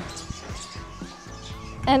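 Aluminium ladder being laid down on sand: a few soft knocks and rattles of its rails.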